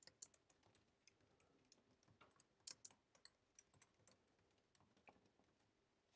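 Faint typing on a computer keyboard: quick, irregular keystroke clicks as a line of code is entered.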